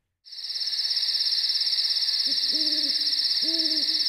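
Night ambience: insects trilling steadily at a high pitch, with an owl hooting twice in the second half.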